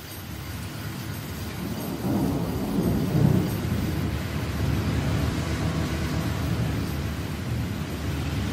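Rumbling thunder over a hiss of rain, swelling in over the first two seconds with a louder roll about three seconds in, used as a sound-effect intro between trap tracks.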